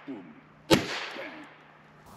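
A pneumatic harpoon gun fires once, a single sharp crack about three quarters of a second in, with a brief ringing tail as the spear strikes the board target.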